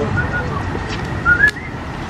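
A few short, high whistled chirps, some of them rising, over a steady low background rumble.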